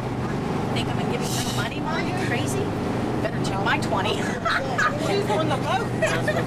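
Tour boat's engine running steadily while underway, a constant low drone with wind and water noise over it.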